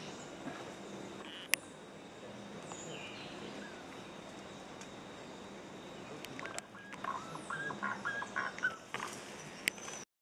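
Forest birds calling over a steady background hiss: a few thin, high, falling calls early on, then from about six seconds in a rapid run of short, stepped notes lasting about three seconds. A single sharp click about one and a half seconds in.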